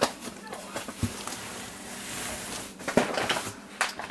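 Brown kraft-paper meal-kit bags rustling and crinkling as they are handled and moved, with a couple of light knocks as they are set down.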